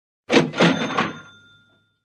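Cash register 'cha-ching' sound effect: a quick clatter of three strikes, then a bell ring that fades away over about a second.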